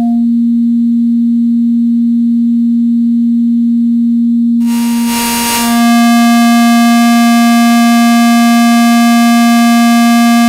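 Harvestman Piston Honda Mk II wavetable oscillator droning at one steady pitch. For the first four and a half seconds it is a nearly pure, sine-like tone. About halfway through a brief noisy, shifting burst comes as the wavetable sliders are moved, and then it settles into a bright, buzzy tone rich in overtones at the same pitch.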